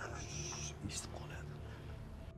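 Soft, breathy speech from a man, with hissing s-sounds and no clear words, over a steady low hum.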